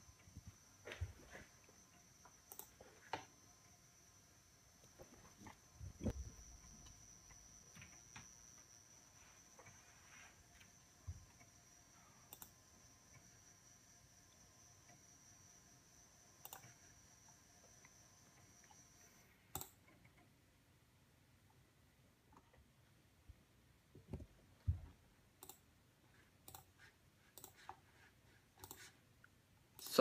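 Faint, scattered clicks of a computer mouse being clicked, with a faint steady high whine that stops about two-thirds of the way through.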